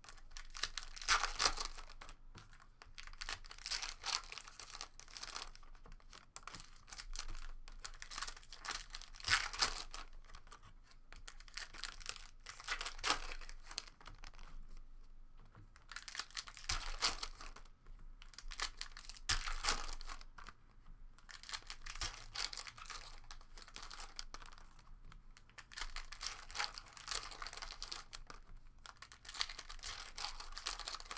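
Foil trading-card pack wrappers being torn open and crinkled, with cards handled between them: a run of paper-and-foil rustling bursts every second or two.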